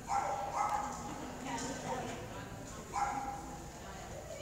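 A dog barking several times, the loudest barks at the start and about three seconds in.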